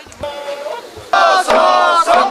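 Men's voices chanting and calling out in a drawn-out, sung cadence for a bō-odori stick dance, quieter at first and swelling loud about a second in. A single sharp knock sounds over the chant.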